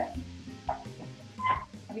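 White wine sizzling in a hot frying pan as the bottom is scraped to deglaze the browned bits, under light background music.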